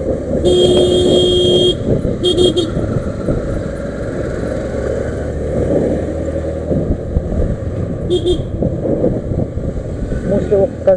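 Vehicle horn honking in traffic: one long blast about half a second in, two quick short toots around two seconds, and one more short toot near the end. Under it runs the steady rumble of wind and road noise from a moving scooter.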